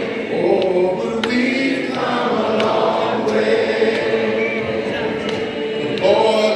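A church congregation singing together, many voices holding long notes without instruments.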